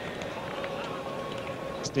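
Steady crowd murmur of spectators at a cricket ground, heard through old television broadcast sound, with a few faint ticks.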